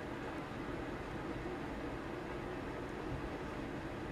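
Steady low hum and hiss of background room noise, even throughout, with no distinct clicks or other events.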